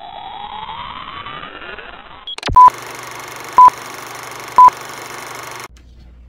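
Electronic sound effects for a computer loading-screen intro: a rising synthetic sweep for about two seconds, a sharp click, then a steady electronic hum with three short high beeps about a second apart, cutting off suddenly near the end.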